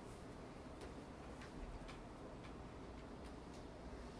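Quiet library reading-room ambience: a low, steady room hum with faint, irregular clicks and taps, about six in four seconds.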